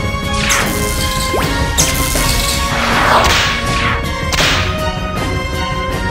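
Cartoon action sound effects: a few swooshing energy-blast sweeps, about four in five seconds, over steady background music.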